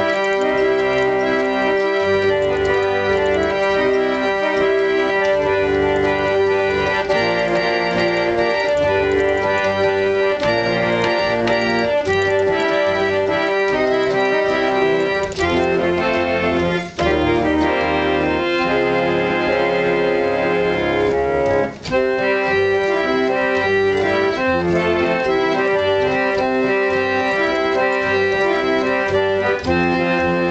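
Antique foot-pumped reed organ played with both hands: sustained chords under a moving melody, the reeds holding steady tones. The sound drops out briefly twice, about 17 and 22 seconds in.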